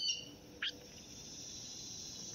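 Insects buzzing steadily in a high, continuous band, with a couple of brief chirps near the start.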